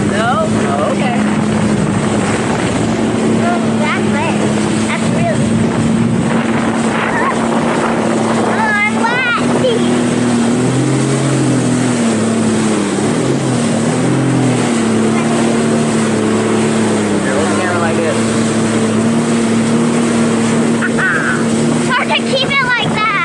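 Jet ski engine running at speed with a steady drone that wavers in pitch around the middle, over the rush of wind and spray. A voice calls out briefly about nine seconds in.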